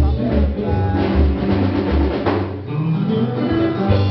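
Live band playing with drum kit and guitar, with a heavy low beat about twice a second that drops out briefly near the middle.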